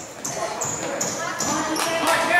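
Indistinct voices of players and spectators echoing in a large gym, with several short, high squeaks of sneakers on the hardwood court.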